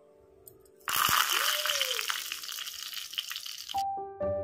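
Curry leaves sizzling and crackling as they hit hot oil in a small clay pot. It starts about a second in as a loud hiss and cuts off abruptly near the end.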